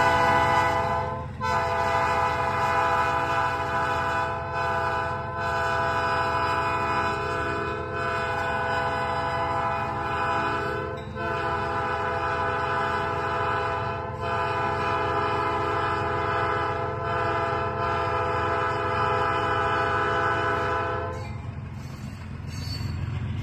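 Locomotive multi-chime air horn on CSX 9553 blowing a series of long blasts with brief breaks, the longest lasting about ten seconds, over a steady low rumble. The horn stops about a second before the end.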